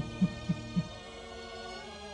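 Dramatic film score: four short low thuds, about four a second, in the first second, over a held chord of sustained tones that carries on after them.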